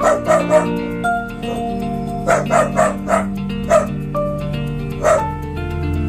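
A dog barking in about ten short barks, some in quick runs of two or three, over steady background music.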